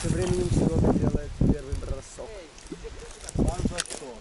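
People talking, their words not made out.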